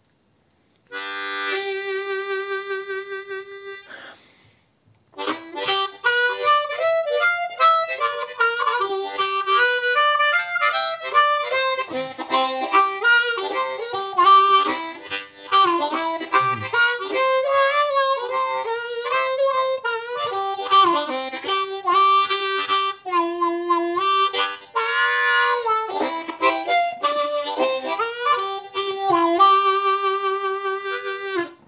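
Hohner Rocket Amp diatonic harmonica in C played solo: a held chord about a second in, a brief pause, then a continuous melodic run with notes bending in pitch.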